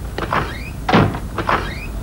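Kitchen clatter of a few sharp knocks while tea is being made, two of them followed by a short rising tone.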